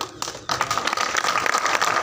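Crowd applauding, a dense patter of many hands clapping that starts about half a second in.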